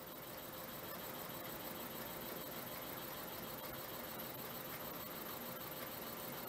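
Quiet room tone: a faint, steady hiss with a faint hum, and no distinct events.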